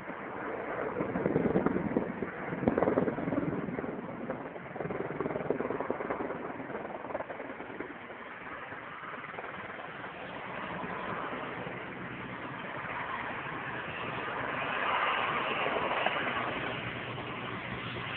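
Firefighting helicopter heard from afar: a steady engine-and-rotor drone that grows louder and brighter in the last few seconds as it comes in low to drop water. A louder low rumble comes and goes in the first few seconds.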